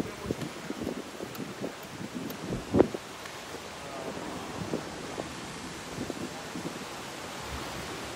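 Small waves washing onto a sandy shore, with wind buffeting the microphone. Several soft knocks come in the first three seconds, the loudest just under three seconds in.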